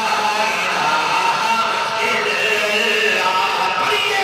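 Men's voices chanting a devotional chant in long held notes that glide slightly in pitch.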